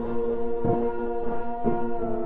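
Generative synthesizer drone from a VCV Rack modular patch built on delay feedback and detuning: several held, horn-like tones sound together, with soft low pulses about once a second.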